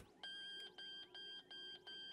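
Faint electronic alarm beeping in a fast, even pulse, about three beeps a second, from a lab machine that has just broken down.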